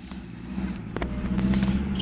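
A small off-road 4x4's engine running at low revs, growing louder as it crawls closer over a rough dirt track, with a single knock about halfway.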